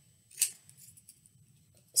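Scissors cutting a piece of paper: one short, sharp snip about half a second in, followed by faint small handling sounds.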